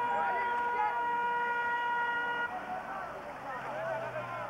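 A vehicle horn sounding one long, steady note that cuts off about two and a half seconds in, with voices chattering behind it.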